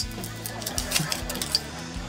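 Crackling clicks of a hot sauce bottle being opened, its perforated plastic seal torn away and the cap twisted off, over soft background music.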